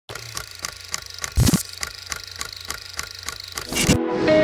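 Film projector sound effect: steady mechanical clicking, about three and a half clicks a second, over a low hum. A heavy thump comes about a second and a half in, and a rising swell builds near the end.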